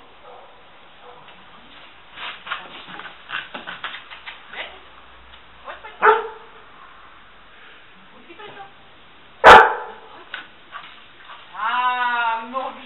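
Search-and-rescue dog in a ruin: a run of light scrabbling taps of paws on rubble, then a short bark and, a few seconds later, a single loud sharp bark.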